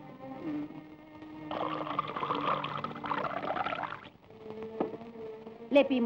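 Milk poured from one glass into another for about two and a half seconds, over soft sustained background music.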